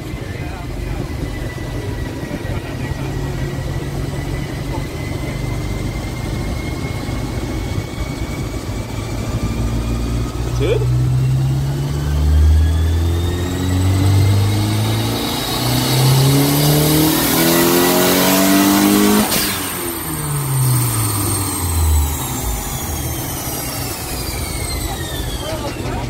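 Nissan RB20E inline-six making a full-throttle pull on a chassis dyno. After running steadily for about ten seconds, the engine note climbs in pitch and grows loudest over about eight seconds, with a high whine rising alongside it. About nineteen seconds in, the throttle is cut and the revs fall away as the rollers coast down.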